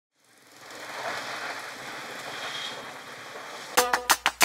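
A steady rushing noise fades in over the first second and holds, with a faint thin high tone over it. Just before the end, plucked, percussive music notes break in sharply in a quick rhythm.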